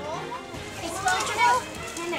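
Young children's high-pitched voices calling and chattering, with background music fading out at the start.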